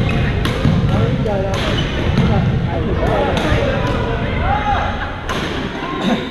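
Badminton rackets striking a shuttlecock with several sharp cracks, over background chatter and shoe noise echoing in a large sports hall.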